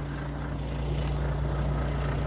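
Heavy truck's diesel engine idling, a steady low hum.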